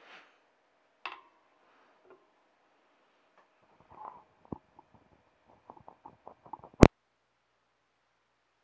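Handling noise from the dismantled microphone's parts on a wooden bench: scattered small clicks and light knocks, growing busier in the second half, then one loud sharp click near the end.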